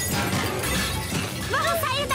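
Cartoon sound effect of a countertop appliance rattling and clattering, shaken by the repair work going on beneath the café. Music plays under it, and about one and a half seconds in a short, bending, whining cry joins it.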